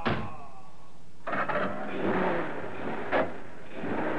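Radio-drama sound effects: a sharp knock right at the start, then a car engine starting and running from about a second in, with a door thunk about three seconds in, as the killers' car gets away.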